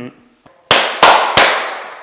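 Three loud, sharp bangs about a third of a second apart, each ringing out in a long fading tail.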